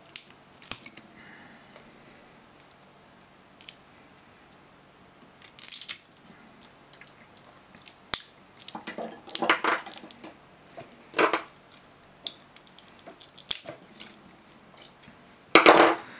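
Pairs of Samsung SDI ICR18650-20B lithium-ion cells being pried and twisted apart by hand: scattered metallic scrapes, clicks and crinkles of the spot-welded nickel strips and tape coming loose, with quiet gaps between them and the loudest scrape just before the end.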